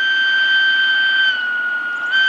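The original whistle of Romanian Class 60 (LDE 2100) Sulzer diesel-electric locomotive 60-1530-9 sounding one long, steady single-note blast. It sags slightly in pitch past the halfway point and comes back sharply at the very end.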